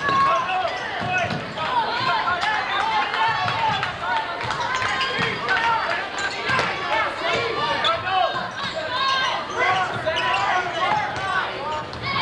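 Basketball dribbling on a hardwood gym floor, with many indistinct overlapping voices of players and spectators shouting and talking throughout.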